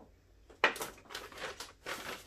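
Plastic shopping bag rustling and crinkling as it is handled, starting about half a second in after a brief quiet.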